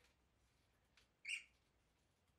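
A single short, high-pitched animal squeak a little over a second in, against near silence.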